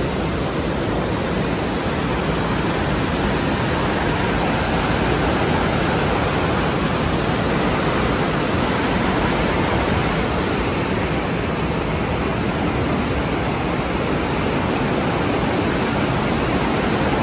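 Loud, steady rush of an arroyo running full of storm runoff after rain, heard from under a concrete road bridge.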